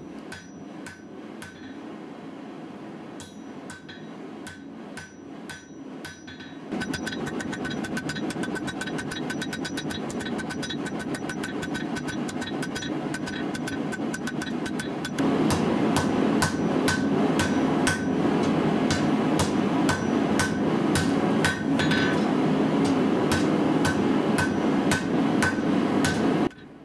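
Hand hammer striking a red-hot steel bar on an anvil in a long run of steady blows, each with a short metallic ring, drawing a forge-welded billet out into a sunobe preform. The blows are slower at first and then come quicker, about three a second. A steady noise underneath grows louder about a quarter of the way in and again around the middle.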